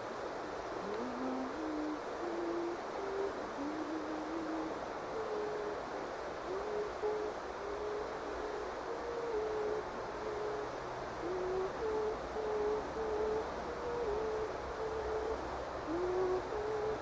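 Someone whistling a low, pure-toned tune: a steady run of short notes that step up and down in pitch, over a constant background hiss.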